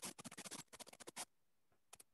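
A faint, quick flurry of small sharp clicks and scratches lasting about a second, followed by a couple of single clicks.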